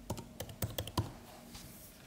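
Typing on a MacBook Air keyboard: about half a dozen quick key clicks in the first second, then faint room tone.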